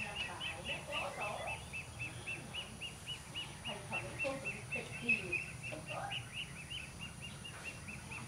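A steady, rapid train of short high chirps, about four or five a second at one pitch, from a small animal outdoors, with scattered irregular mid-pitched calls or distant voices underneath.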